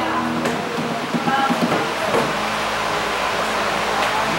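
A diffuse murmur of many overlapping voices, a congregation praying aloud together. A held music chord cuts off about half a second in.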